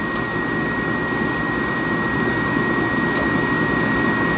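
Snyder General GUA gas furnace's combustion blower running steadily, with a thin high whine on top, during a trial for ignition in which the gas valve is powered but the burner never lights. The technician puts the failed ignition down to a gas supply problem or a failed gas valve.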